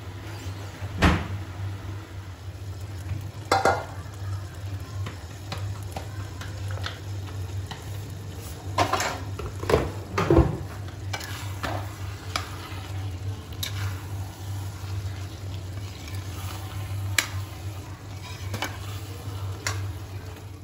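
A metal spatula stirring a thick vegetable curry in a kadhai, knocking and scraping against the pan at irregular intervals, with the loudest knocks about a second in and around the middle. Under it run a light sizzle and a steady low hum.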